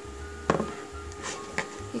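Scissors picked up off a table, giving a single sharp knock about half a second in, then a few faint small clicks of handling, over a steady low hum with a faint tone.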